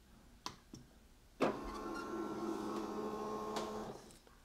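Two faint clicks, then, about one and a half seconds in, the flatbed scanner of an Epson WorkForce WF-2960 starts its scan. Its carriage motor runs with a steady whine made of several held tones.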